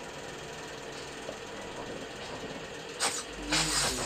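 Steady low drone from a music-video concept teaser's soundtrack playing back, with a faint held tone. A sudden noisy burst comes about three seconds in, and it grows louder and busier near the end.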